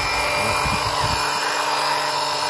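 Meltec 12V DC electric liquid-transfer pump running off a car battery: its small motor gives a steady, even whine with a hum beneath it.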